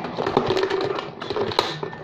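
Rapid clicking and clattering of small plastic toy pieces and a plastic box being handled as the pieces are packed inside.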